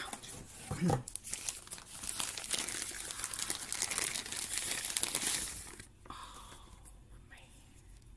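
Crinkling and rustling of the protective wrapping as a new compact camera is pulled out of it, a dense crackle that stops about six seconds in.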